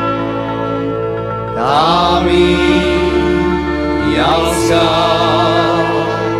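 Slovak folk song played by a cimbalom band: sustained chords underneath while the melody slides up into long notes with vibrato about one and a half seconds in, and again just after four seconds.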